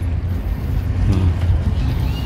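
Steady low rumble of outdoor background noise, with faint distant voices about a second in.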